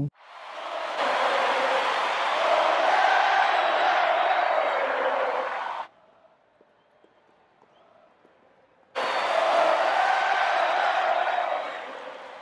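Large stadium crowd cheering as a dense steady roar of many voices. It swells in, cuts off abruptly about six seconds in, and after about three seconds of near silence returns suddenly and fades near the end.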